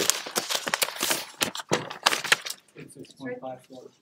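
Rummaging noises: a rapid, irregular run of clicks, knocks and rustles as things are shuffled about in a search for a calculator. It thins out after about two and a half seconds, and faint speech follows near the end.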